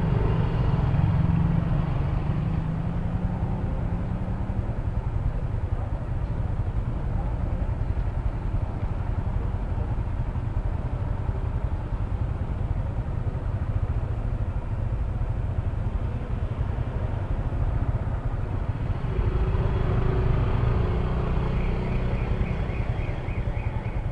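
Yamaha scooter engine idling with a low, steady drone while stopped in a queue. About nineteen seconds in it gets louder for a few seconds as the scooter moves forward.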